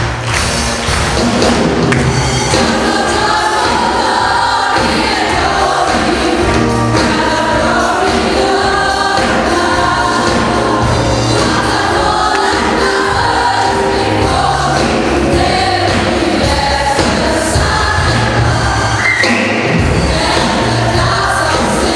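Live choir singing an upbeat gospel song with a band, bass and drums keeping a steady beat underneath.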